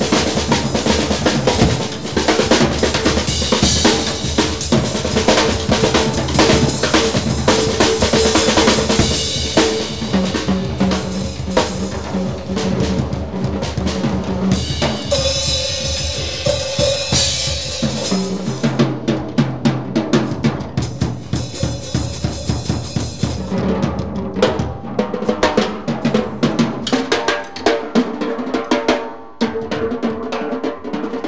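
Free-improvised jazz drum solo on a drum kit: rapid, dense snare and tom strokes with bass drum, and washes of cymbal that fill the first two-thirds and thin out later, leaving mostly drums near the end.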